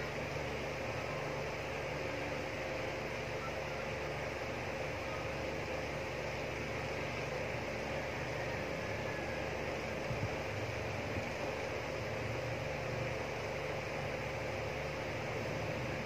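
Steady background hum and hiss of a running room appliance, with a constant faint tone; no other sound stands out.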